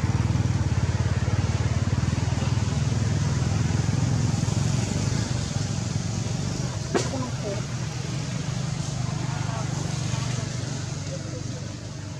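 A motor vehicle's engine running steadily with a low pulsing hum, fading in the second half. There is a sharp click about seven seconds in.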